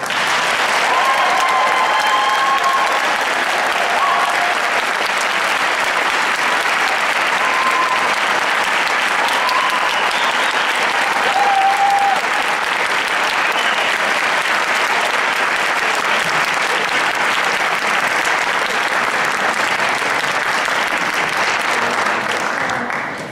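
Audience applauding steadily in a large hall, with a few brief cheers rising over the clapping in the first dozen seconds.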